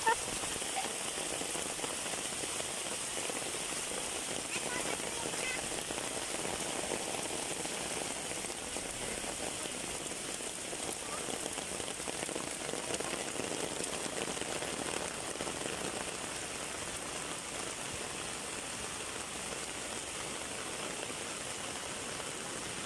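Steady rain falling on leaves and a wet road, an even hiss that eases slightly towards the end.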